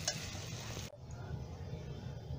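Paniyaram batter frying quietly in an oiled appe pan: a faint even sizzle with a short click at the start, cutting off suddenly a little before halfway to a quieter low hum.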